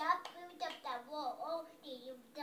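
A toddler girl singing a song in a small voice, her pitch gliding up and down, with a hand clap right at the start.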